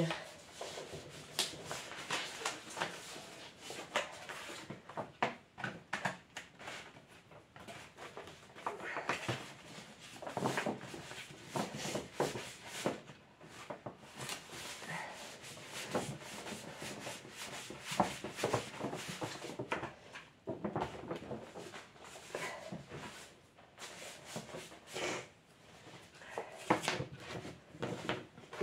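Sheets of paper rustling and crackling as they are handled and rolled, with irregular light knocks and clicks throughout.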